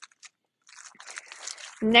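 Clear plastic sleeves on packs of scrapbook paper crinkling as they are handled and shifted, starting about a second in after a brief quiet.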